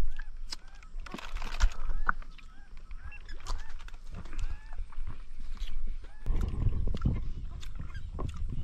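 A bird calling over and over in short rising-and-falling notes, about two a second, with scattered clicks of handling. About six seconds in, a low rumbling noise comes in.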